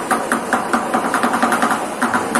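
Improvised percussion on plastic buckets and tin cans struck with drumsticks: a fast, even run of strikes, about eight a second, with no deep bass beat.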